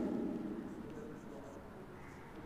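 Chalk writing on a blackboard: a few faint short chalk strokes near the middle, as an arrow and the first letters of a word are written.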